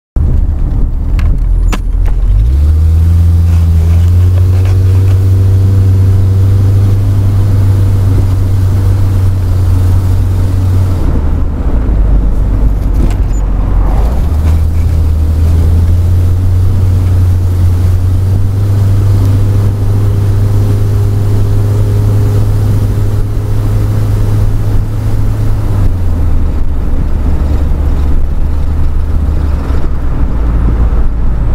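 Car engine and road noise heard loudly from inside the cabin while driving: a heavy low drone that rises in pitch as the car pulls away. It eases off briefly about eleven seconds in, pulls steadily again, then eases near the end.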